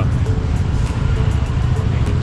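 Steady low rumble of motorcycle traffic under background music with a quick ticking beat.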